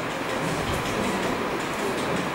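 Steady background noise, an even hiss with a low rumble and no distinct event.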